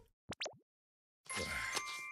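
A short cartoon sound effect: a quick cluster of sliding tones about a third of a second in. Soft background music with held notes comes in after about a second.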